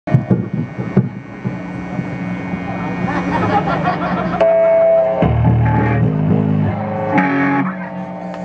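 Electric guitars through amplifiers sounding loose sustained notes before the song gets going, over a steady amplifier hum. There are a few clicks in the first second, a high held note about halfway, then low ringing notes.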